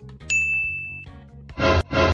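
A bright, edited-in 'ding' sound effect: one clear, steady high tone held for under a second. About a second and a half in, a short, louder burst of another sound follows.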